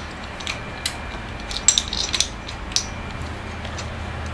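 Stainless steel pipe-nipple extractor being handled and fitted into a pipe nipple and coupling: scattered, irregular light metal clicks and short scrapes, a cluster of them about halfway through.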